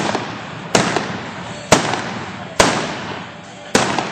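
Four single-action revolver shots firing black-powder blanks at balloon targets, about a second apart, each loud crack trailing off in the reverberation of an indoor arena.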